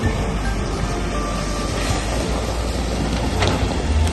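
Background music playing over a Jeep Wrangler Rubicon driving through a shallow creek, its engine running and its tyres splashing through the water.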